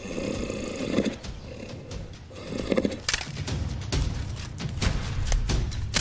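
Two loud bellows from a wounded Cape buffalo, one at the very start lasting about a second and a shorter one about three seconds in, over background music with a drum beat.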